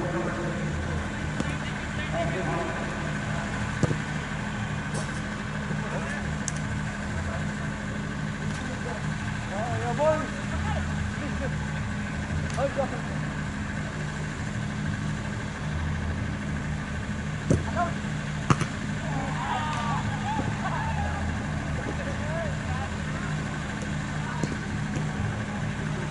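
A steady low hum, engine-like, runs throughout with a second steady tone above it. Faint distant voices call out now and then, and two sharp knocks come a little past halfway.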